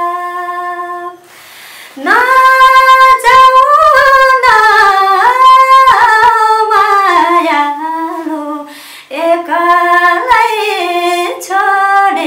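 A woman singing unaccompanied, holding long notes that slide up and down in pitch. She breaks for a breath about a second in, then sings on loudly, with another short break near the end.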